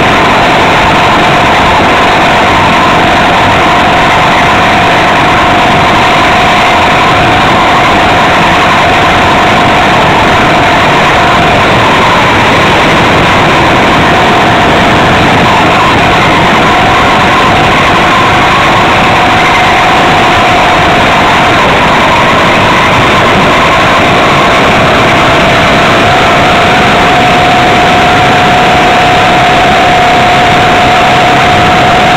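Small two-stroke engine of a motorized bicycle running loud and steady at cruising revs under way, its pitch wavering slightly as the throttle changes.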